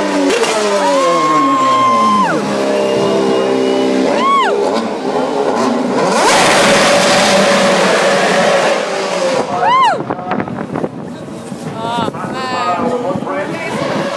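McLaren Formula One car's Mercedes engine revving at very high rpm in a city street. Its pitch falls over the first couple of seconds as it slows and shifts down, then it gives two sharp rev blips, about four seconds in and again near ten seconds.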